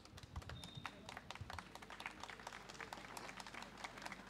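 Faint, scattered clapping from a small audience, a patter of many irregular claps.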